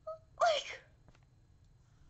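A woman's short, breathy vocal outburst about half a second in, falling in pitch: a wordless groan-like exclamation of exasperation.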